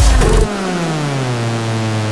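Minimal techno breakdown: about half a second in, the kick drum drops out and a single buzzy electronic tone slides steadily down in pitch, then levels off low.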